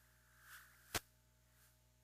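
Near silence from the FM receiver's audio, a low steady hum, broken by one sharp click about a second in, with fainter swishes just before and after it.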